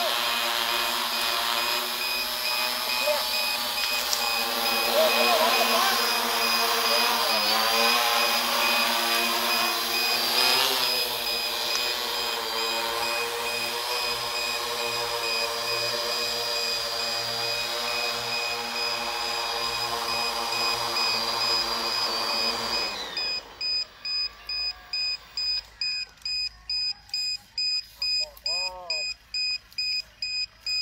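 Large multirotor drone hovering low and descending, its rotors giving a steady multi-tone hum that wavers in pitch. The rotors cut off abruptly as it sets down, leaving a regular electronic beeping of about two beeps a second.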